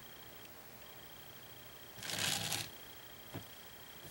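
Mostly quiet with a faint steady high-pitched whine; about two seconds in, a brief rustling scuff lasting under a second, and a small click near the end.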